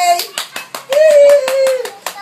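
Young Alaskan malamute howling along in one held, slightly falling note about a second long, after a run of quick hand claps.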